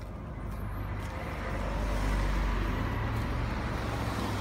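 A car driving past close by: engine and tyre noise swell to a peak about two seconds in, over a steady low engine hum.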